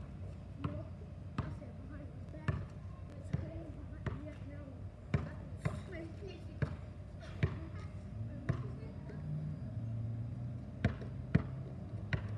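A basketball dribbled on an asphalt street: sharp bounces at uneven spacing, about one a second, with faint voices underneath.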